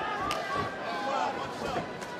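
Arena crowd noise with shouted voices around the cage, and one sharp smack about a third of a second in.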